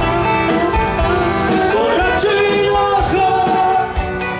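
Live rock band playing, with drums keeping a regular beat under electric guitars, bass, keyboard and a sung melody.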